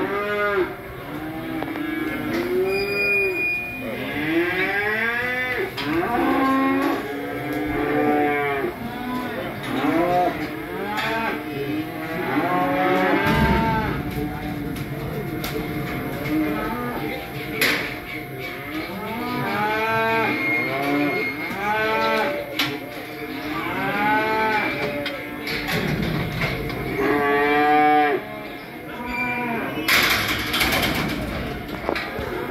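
A pen full of cattle mooing and bawling, many calls overlapping one after another without a break, with an occasional sharp knock.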